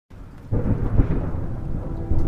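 Rumbling thunder with a rain-like hiss, starting suddenly about half a second in, most of it deep and low, used as the song's intro effect.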